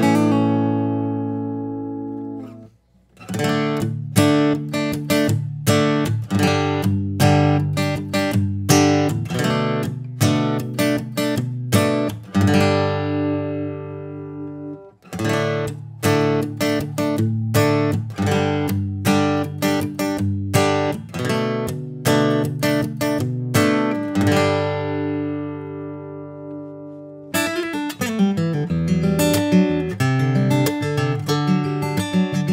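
Acoustic guitar played in picked phrases with notes and chords ringing out, recorded with a Neumann KM184 condenser microphone blended with the guitar's line signal. Brief pauses between phrases come about 3, 15 and 27 seconds in.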